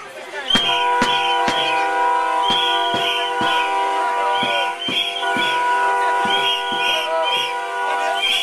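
Protest noisemakers sounding together: several horns held in long steady notes, over a regular beat of sharp strikes about twice a second, each with a short high chirp.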